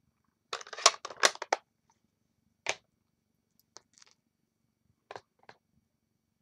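Clicks and taps of clear stamping supplies (acrylic block, stamp) being handled on a craft table: a quick cluster of sharp clicks about half a second in, then single clicks spaced out after it.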